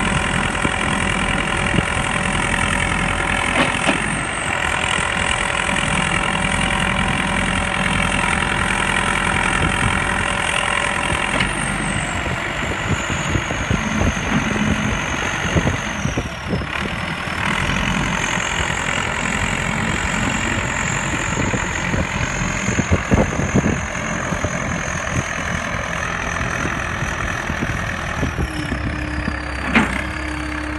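Diesel engine of an older backhoe loader running steadily, with a high whine that drops in pitch about twelve seconds in and again near the end.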